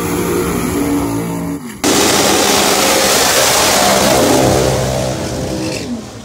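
A drag race car's engine running steadily at raised revs for the first couple of seconds. After an abrupt cut, a drag car's engine revs hard at full power, louder and rougher, then fades near the end as the car pulls away.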